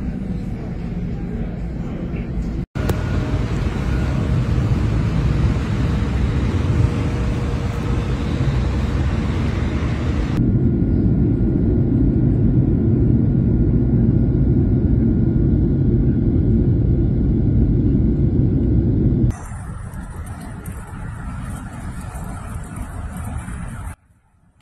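Wheel loader's diesel engine rumbling as it pushes snow. After abrupt changes about three and ten seconds in, a loud, steady rushing rumble follows, and a quieter hiss in the last few seconds.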